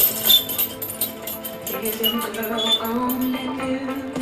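Background music with a held, gently gliding melodic line that sounds like a sung vocal.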